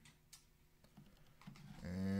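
Faint, scattered clicks of computer keys as the spreadsheet is scrolled and navigated. A man's voice starts just before the end, louder than the clicks.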